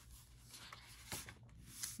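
Faint rustling and rubbing of paper as a page of a patterned paper pad is turned and smoothed flat by hand, with a few soft brushes near the middle.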